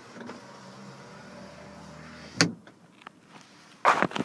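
2014 Honda Ridgeline RTL's power sliding rear window motor running steadily for about two and a half seconds, then stopping with a sharp thump as the pane reaches its stop, followed by a few faint clicks.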